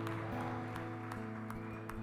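Soft live instrumental backing from the stage band: a few notes held and ringing steadily, with no strumming or melody.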